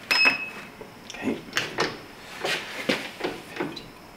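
A milling machine's digital readout keypad clicks and gives one short electronic beep as a button is pressed, followed by a series of irregular light knocks and clatters.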